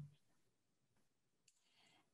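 Near silence, with one faint click about one and a half seconds in.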